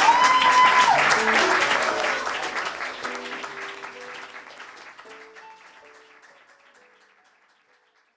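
Audience applause mixed with music: a held high note ends about a second in, then a few short notes follow, and the whole sound fades out to silence near the end.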